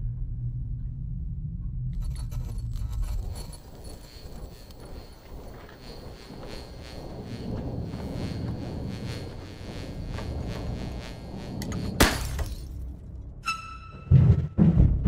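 Horror trailer score with no dialogue: a low drone, joined by a high, grainy texture from about two seconds in. A single sudden loud crash with a ringing tail comes about twelve seconds in.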